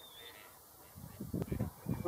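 Gadwalls chasing on the water: after a quiet first second, a burst of irregular splashing and short, harsh low calls.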